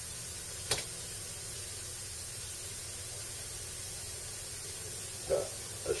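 Electric heat gun running: a steady hiss of blown air. One sharp click comes just under a second in.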